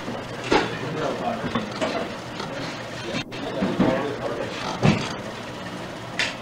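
Indistinct voices of police dispatchers at work over a steady hiss, no words clear, with a couple of sharp knocks, one near the start and one near the end.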